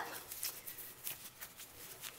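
Faint, irregular rustling and light scratching of satin corset fabric and laces being tugged and adjusted at the back.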